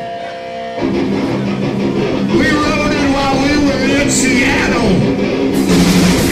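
A live rock band starting a song on amplified electric guitar: a few held notes ring, then about a second in the full band comes in loud.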